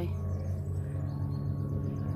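A steady low hum made of several held tones, running at an even level.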